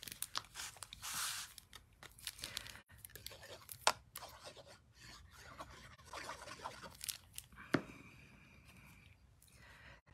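Faint handling of paper and cardstock: soft rustles and scratchy crackles as a die-cut paper balloon is dabbed with liquid glue and pressed onto a card, with two sharp little ticks, about four seconds in and near eight seconds.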